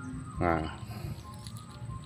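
A man's short voiced sound, a brief hum or filler syllable, about half a second in, then a quiet outdoor background with a faint steady high-pitched tone.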